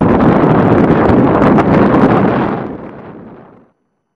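Wind buffeting the microphone of a camera filming from a moving vehicle, with road noise, fading out near the end.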